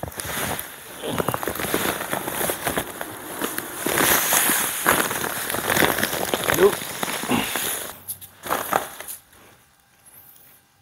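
Sand poured from a paper sack into a large metal cooking pot: a steady, crackly rush of grains with the paper bag crinkling. The pour stops about eight seconds in, followed by a few light scuffs.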